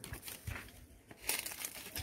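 Cashew leaves rustling and brushing against the microphone as it moves through the branches, in irregular bursts with the loudest rustle a little past halfway.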